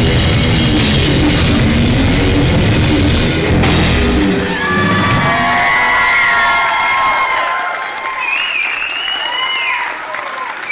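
Live rock band playing loud with electric guitar, bass and drum kit, stopping about four seconds in. High, gliding tones ring on over a quieter hall after the stop.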